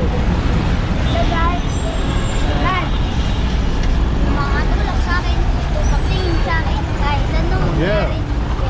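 Heavy road traffic of trucks and motorcycles, a steady low rumble, with children's voices calling out now and then over it.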